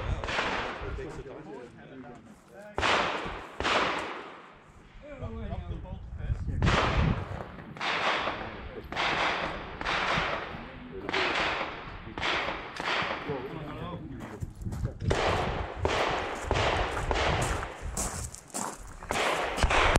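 Repeated gunshots, about twenty sharp reports spaced irregularly roughly a second apart, each trailing off in an echo, with voices in between.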